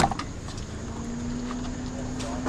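A sharp knock at the start, then a steady low vehicle engine hum that sets in about half a second later.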